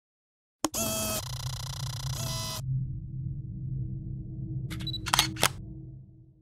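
Camera shutter sound design: a sharp click and a dense burst of steady tones lasting about two seconds, then a low rumble with a few quick shutter clicks about five seconds in.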